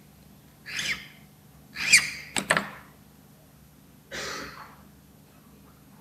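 Small handling noises at a wooden worktable as a key is inspected and a file taken up: two quick sharp knocks about two and a half seconds in and a short scrape a little after four seconds, with a couple of short breathy sounds close to the microphone before them.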